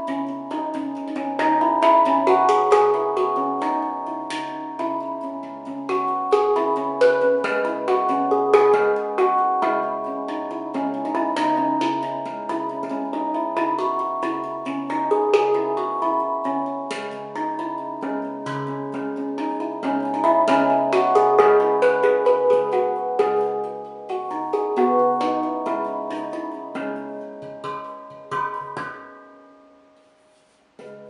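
Stainless steel handpan in C# Celtic minor, tuned to 440 Hz, played with the hands: a steady stream of struck notes that ring on and overlap, fading away near the end.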